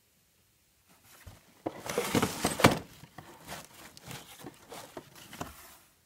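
Plastic wrapping and cardboard packaging rustling and crinkling, starting about a second in, loudest around two to three seconds in, then lighter crackles.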